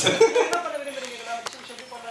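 A man's voice through a microphone, trailing off within the first second, then lower room noise with a single sharp click about one and a half seconds in.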